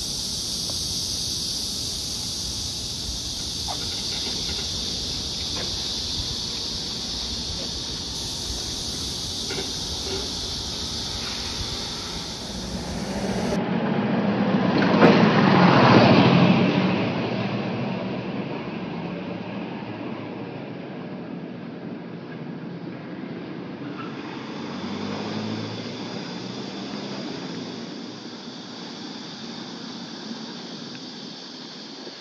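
Street ambience with a steady high buzzing of cicadas through the first half. About fourteen seconds in, a vehicle approaches and passes, swelling to a peak and fading over a few seconds. The cicada buzz returns faintly near the end.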